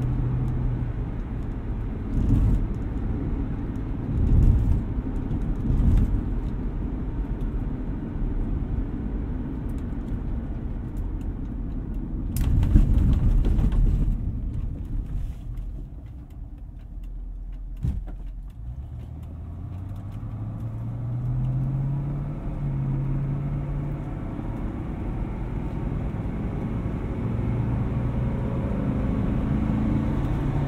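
Cabin sound of a 1973 Mercedes-Benz 450SEL's 4.5-litre V8 and road noise while driving, with a few low thumps in the first seconds and a loud jolt about twelve seconds in. After a quieter stretch the engine note rises steadily under acceleration, then levels off.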